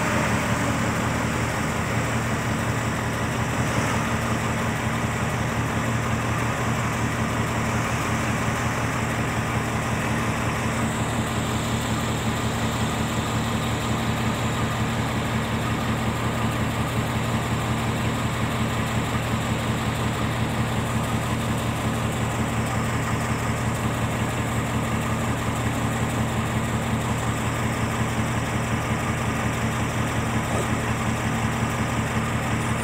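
Heavy diesel engines of an excavator and a dump truck running steadily, an even low drone with no breaks.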